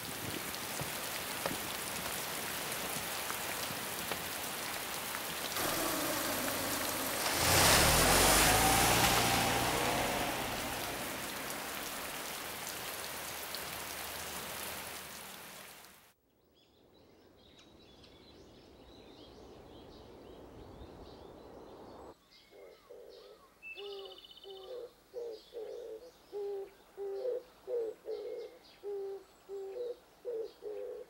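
Steady heavy rain, swelling with a low passing rumble, then fading out about halfway through. After a short hush, doves cooing in a repeated rhythm begin, with a brief higher bird chirp among them.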